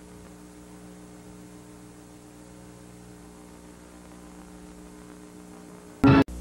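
Steady low electrical mains hum with a faint hiss under it: the audio of a blank stretch of VHS tape played back between recorded clips.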